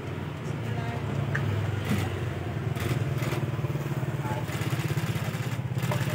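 An engine running steadily with a low, quickly pulsing rumble, under the chatter of people around.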